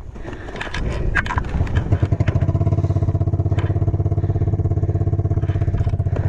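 Snow-tracked quad's engine starting up after being flipped over backwards, catching about a second and a half in and then idling steadily with an even pulse.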